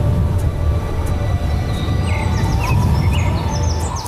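A low, rushing wind-like noise runs through, with birds chirping from about halfway in, under background music.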